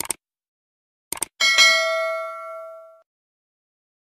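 Subscribe-button animation sound effect: a mouse click, a quick double click about a second later, then a bell ding that rings out and fades over about a second and a half.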